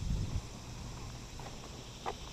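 Faint outdoor background noise, with a brief low rumble in the first half second.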